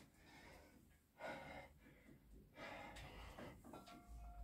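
Faint, effortful breathing of a man pulling through weighted chin-ups with 20 kg added, near the end of a hard set: two breaths, one about a second in and a longer one about a second and a half later.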